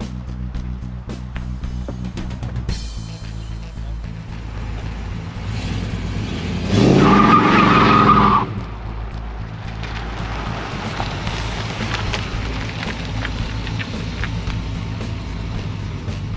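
1968 Chrysler 300's 440 cubic-inch big-block V8 revving up hard as the car takes off with wheelspin, the rear tyres squealing for under two seconds about seven seconds in. Background music plays throughout.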